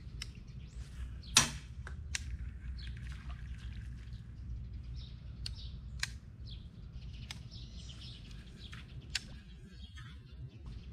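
Birds chirping over a steady low rumble, with several sharp clicks scattered through; the loudest click comes about a second and a half in.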